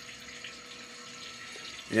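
CNC cylinder honing machine running with a steady wash of flowing coolant and a faint steady hum as the hone head lowers toward the cylinder bore.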